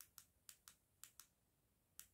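Near silence with about six faint, sharp clicks spread through the two seconds.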